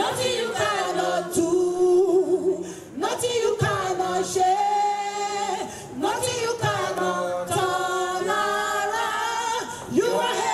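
Gospel group singing a cappella: women's voices in the lead with a small choir, a Christian spiritual song in Nigerian style.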